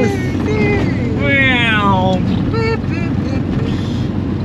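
Volkswagen Kombi's air-cooled 1600 boxer engine running steadily as the van drives, heard from inside the cabin, with laughter and a cheer from the people inside over it.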